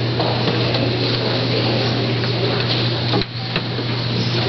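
A steady hiss over a low, even hum, with a click and a brief drop in level a little after three seconds in.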